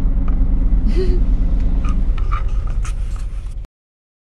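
Low, steady rumble of a semi-truck's diesel engine and rolling tyres heard from inside the cab while driving. It cuts off suddenly near the end.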